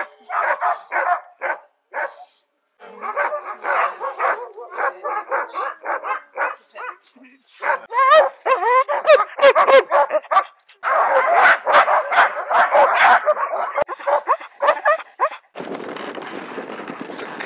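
A team of harnessed sled dogs barking, yipping and yelping, with many dogs calling over one another in a dense chorus near the middle, the noise of dogs waiting eagerly to start a run. Just before the end the barking gives way to a steady rushing noise.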